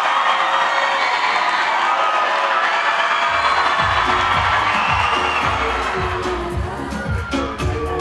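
Crowd cheering and screaming. About three and a half seconds in, pop music with a heavy bass beat starts.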